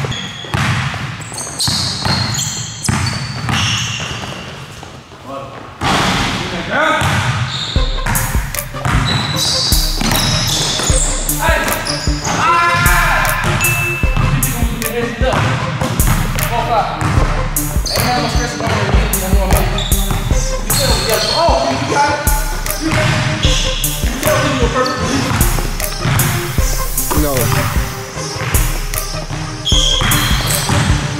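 Basketball bouncing repeatedly on an indoor court floor as it is dribbled. About six to eight seconds in, music with a heavy pulsing bass line comes in and runs under the bounces.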